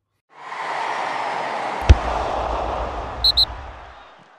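Logo-sting sound effect: a swelling whoosh, then a sharp hit about two seconds in followed by a low rumble, and two quick high bleeps near the end before it fades out.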